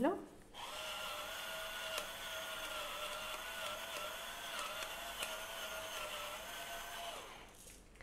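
Russell Hobbs electric pepper mill grinding black pepper: its small motor runs with a steady whine that wavers slightly in pitch, starting about half a second in and stopping about seven seconds in.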